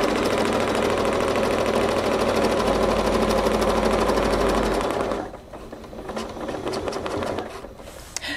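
Domestic sewing machine free-motion quilting through a quilt sandwich, guided along a ruler: a steady run of rapid, even needle strokes that stops about five seconds in, leaving a few quieter clicks.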